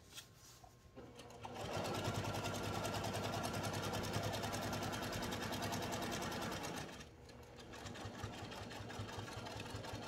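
Domestic electric sewing machine stitching through layered fabric. It starts about a second in, runs at a steady fast speed for about five seconds, then drops off and runs on more quietly for the last few seconds.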